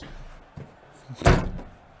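A single sharp thump about a second in, against low room sound.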